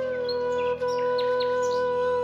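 A flute holding one long low note over a soft steady drone, breaking off for an instant just under a second in and picking the same note up again, while birds chirp in short high calls.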